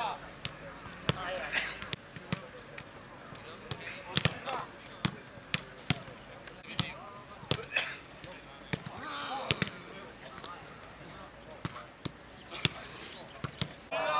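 Footballs being kicked and passed on a grass pitch: repeated sharp thuds at irregular intervals, several a second at times, with players' voices and shouts in between.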